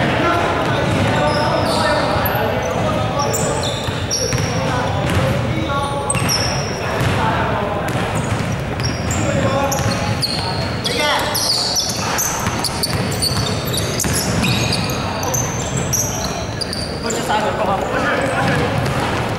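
Indoor basketball play on a wooden court: the ball bouncing, sneakers squeaking in many short high chirps, and players' voices, all echoing in a large hall.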